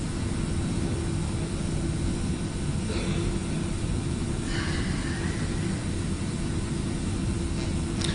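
Steady room noise in a lecture hall with no speech: a low, even rumble with one faint constant hum running under it.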